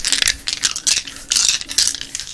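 Several dice shaken in cupped hands close to the microphone, clicking against each other in a quick, irregular clatter.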